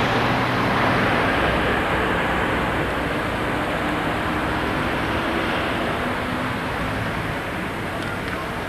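Road traffic: cars driving past close by, with engine and tyre noise. It is loudest in the first couple of seconds and eases off a little after.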